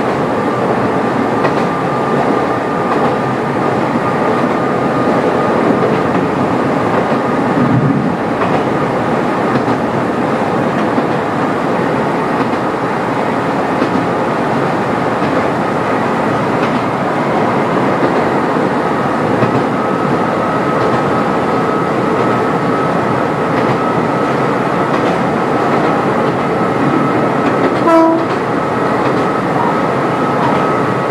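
Kobe Electric Railway 1100 series electric train running steadily, heard from the cab, with wheel-and-rail noise and a steady whine that rises slightly in pitch. A brief horn toot sounds about two seconds before the end.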